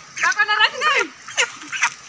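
White broiler chicken squawking in a series of short, sharp cries as it is grabbed by hand.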